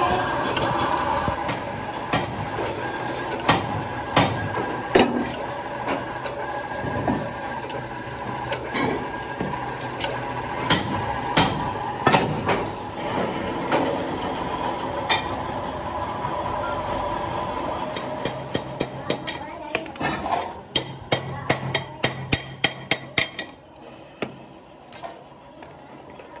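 Workshop machinery running with a steady hum, with scattered sharp metal knocks and clinks over it. Near the end comes a quick run of sharp metal taps, about three a second.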